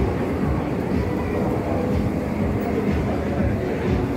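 Steady low rumble and hum of an electric suburban train standing at a station platform with its doors open.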